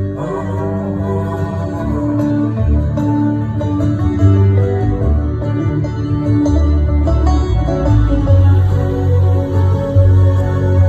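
Instrumental passage of a live folk song played with a symphony orchestra, with no singing: held notes over a strong low bass line.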